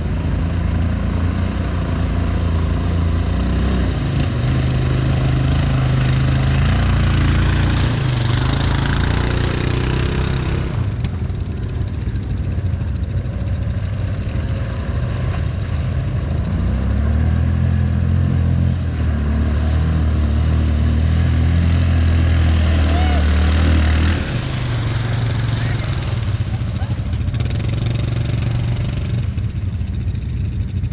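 Two ATV engines working through a deep, flooded mud hole, the engine note rising and falling with the throttle. The sound drops somewhat about three-quarters of the way through as the machines pull away.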